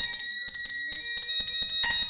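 Improvised electronic music: high, steady ringing tones held under a run of irregular clicks, with a lower tone drifting slightly in pitch.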